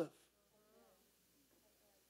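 Near silence: room tone, with a faint wavering tone during the first second.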